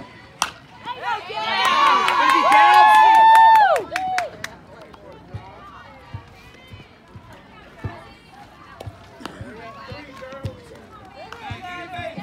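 A single sharp crack of a softball bat hitting the ball about half a second in, then loud shouting and cheering from spectators for about three seconds, with some clapping; scattered chatter follows.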